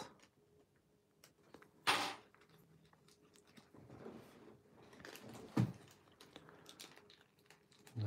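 Faint crinkling and rustling of thin origami paper being collapsed and pinched into folds by hand. There are a few small ticks, a short sharp voice-like sound about two seconds in, and a slightly louder spell of rustling from about four seconds that ends in a click.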